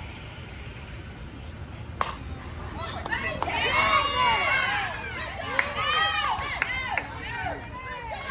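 A single sharp crack of a softball bat striking the ball about two seconds in, followed by spectators yelling and cheering.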